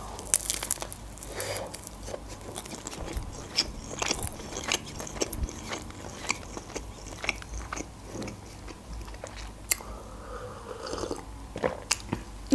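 A close-miked bite into a shawarma (meat and vegetables wrapped in thin flatbread), then steady chewing with many short, sharp crackles and mouth clicks.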